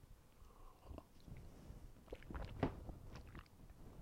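A few faint, scattered clicks over a quiet background, the clearest about a second in and twice between two and three seconds in.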